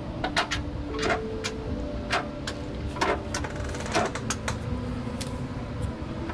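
Irregular light clicks and taps of small screws and a plastic fender flare being handled and set against a car's body panel, several a second apart.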